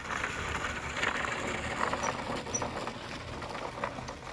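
A vehicle driving off along a dirt track: a low rumble with a rough crunching noise that eases slightly toward the end.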